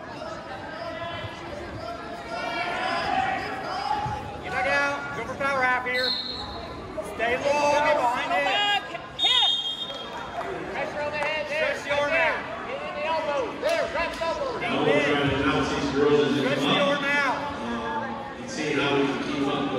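Shouting voices echoing in a school gym during a wrestling match, with two short, steady referee's whistle blasts a few seconds apart in the first half and occasional thuds on the mat.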